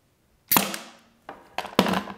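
Pneumatic 18-gauge brad nailer firing once into plywood about half a second in, a sharp crack with a short ring. The air supply is turned down to 50 PSI, so the brad is underdriven and left proud of the surface. A few lighter clicks and knocks follow near the end as the nailer is set down on the bench.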